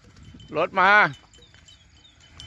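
A woman's sing-song shout, one short call, warning the buffaloes of an approaching car. After it, small bells tinkle faintly.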